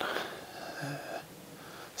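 A man breathing close to the microphone between whispers, soft breaths with one brief low voiced sound a little before the middle.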